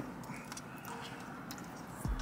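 Quiet car-cabin room tone with a few faint small clicks.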